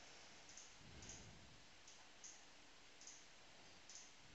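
Near silence: room tone with about six faint, sharp clicks spaced unevenly, and a faint low rumble about a second in.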